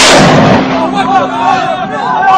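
A rocket fired from a pickup-mounted multi-tube rocket launcher: a sudden loud blast right at the start with a fading whoosh over about half a second, then several men shouting.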